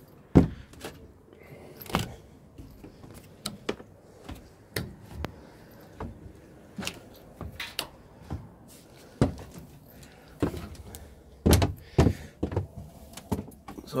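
Irregular thuds and knocks of someone climbing aboard a small boat sitting on its trailer and stepping about on its deck, with a loud thump just after the start and another cluster near the end.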